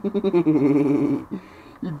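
A man's wordless voice near the microphone: a quick run of short vocal sounds, then one held, wavering sound lasting under a second.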